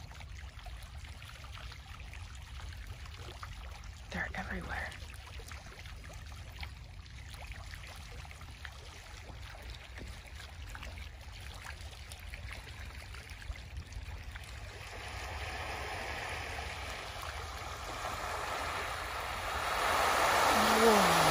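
A school of baitfish flicking and splashing at the water's surface: a faint scattered patter that swells, from about three-quarters of the way in, into a loud fizzing spatter as the school boils up, over a steady low rumble.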